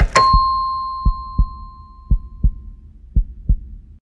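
Cartoon heartbeat sound effect: a double thump, lub-dub, about once a second. At the very start a click is followed by a single bell-like ding that rings out and fades over about two seconds.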